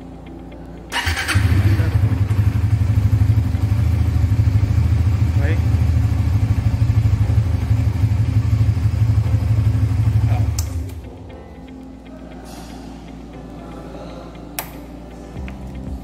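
Suzuki GSX-R150's single-cylinder engine starting on the electric starter about a second in, after its keyless ignition has been unlocked with the manual 4-digit code. It idles steadily for about nine seconds, then is switched off and runs down. A single click comes near the end.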